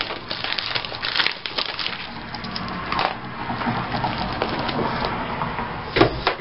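Sticker sheets and plastic binder sleeves crinkling and crackling as they are handled and bent, with the crackling densest in the first couple of seconds and then easing off.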